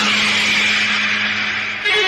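A loud hiss-like noise sets in suddenly and fades over nearly two seconds, over the low steady drone of snake-charmer pipe music. Just before the end the drone stops and a song cuts in.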